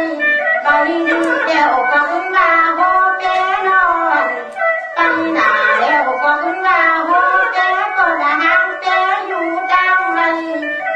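Tai Lue khap singing: a voice sings a traditional verse continuously over instrumental accompaniment.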